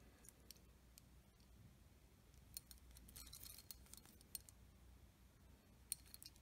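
Near silence with a few faint metallic clicks as a stainless steel watch bracelet and case are handled and turned in the fingers.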